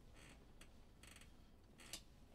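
Near silence: room tone with a few faint short clicks and soft rustles.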